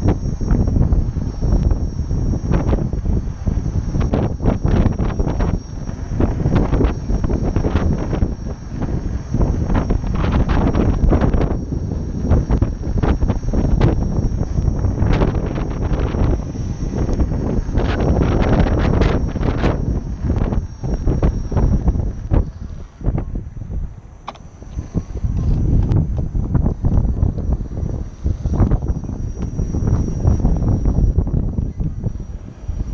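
Wind buffeting the microphone as the camera moves along with a rider on an electric unicycle: a loud, gusty low rumble with frequent irregular knocks. It eases briefly about two-thirds of the way through, then returns.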